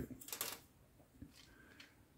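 Faint clicks and light rattling of plastic model-kit sprue frames being handled, mostly in the first half second, with a few softer ticks after.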